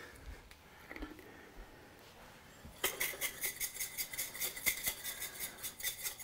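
A small jar of dried garlic crumbles shaken over a wok, rattling fast and evenly at about seven shakes a second, starting about halfway through.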